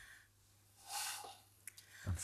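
Mostly quiet, with one short, soft breath or sniff about a second in and a faint click near the end.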